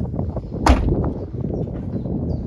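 A 2018 Subaru XV's tailgate slammed shut once, a single sharp bang about two-thirds of a second in.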